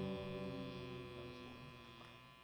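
The last held chord of a band song, keyboard and electric guitars, ringing out and fading slowly toward silence.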